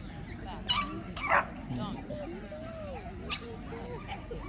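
A dog barking twice in quick succession about a second in, over background chatter.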